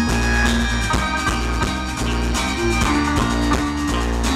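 Live folk-rock band playing an instrumental passage with a steady beat: accordion, guitar, double bass and drums.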